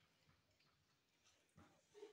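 Near silence: room tone, with a couple of faint brief sounds near the end.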